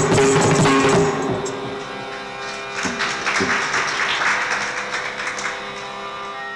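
Carnatic ensemble with violin and the mridangam and kanjira drums closing a piece in raga Ganamurti. The drum strokes are loud and dense for about the first second, then the music drops to softer strokes over sustained notes.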